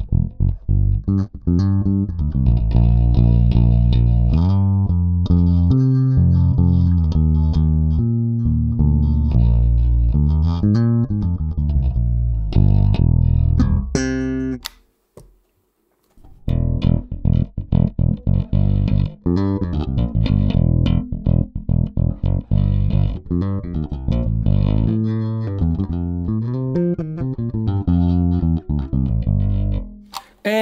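Music Man StingRay four-string electric bass played fingerstyle: a bass line of plucked notes, some sliding up and down in pitch. It breaks off for about a second and a half around the middle, then the playing resumes.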